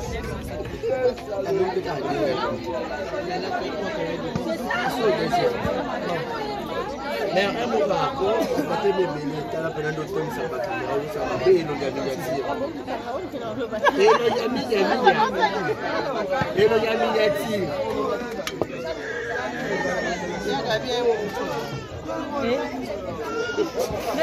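Several people talking over one another in lively chatter. Nothing else stands out.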